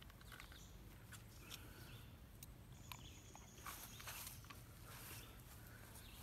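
Near silence: faint outdoor ambience with a low steady rumble and a few small clicks, and a faint thin high tone for about a second and a half around the middle.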